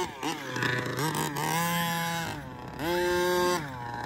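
Gas-powered 1/5-scale HPI Baja 5T's 30.5cc Zenoah two-stroke engine with a DDM Dominator pipe, revving in throttle bursts. The pitch climbs and holds high for over a second, drops off, then climbs and holds again briefly before falling near the end.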